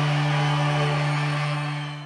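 A live band's closing chord, held and ringing out as one steady note, then fading away near the end.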